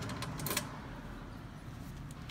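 Metal equipment cabinet door being pushed shut, with a sharp click about half a second in as it closes.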